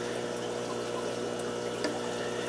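Steady hum with a bed of water noise from running aquarium equipment, such as pumps and filters on the neighbouring tanks.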